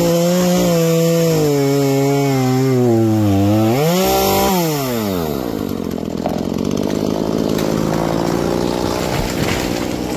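Two-stroke gas chainsaw cutting through a tree trunk, the engine pitch slowly sinking under load as the bar bites into the wood. About four seconds in it picks up briefly, then slows steadily down to a rough idle as the cut is finished, with a noisy rush over the idle while the tree goes over.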